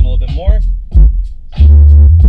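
Hip-hop song played through a car stereo with a Rockville RMW8A 8-inch powered subwoofer, heard inside the car cabin. Deep kick drums come about twice a second under the vocals, then a long, loud bass note sounds near the end.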